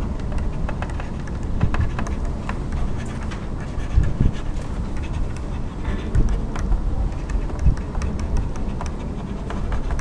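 Steady low rumbling background noise on a lecture microphone, with scattered light clicks and taps while notes are being handwritten on screen. There are a few louder thumps about four, six and nearly eight seconds in.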